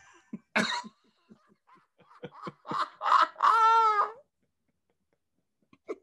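Men laughing: a short burst near the start, a run of short broken gasps, then one long high laugh held for about a second in the middle.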